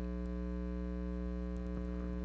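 Steady electrical mains hum, a constant low buzz with a stack of overtones, carried in the room's sound system.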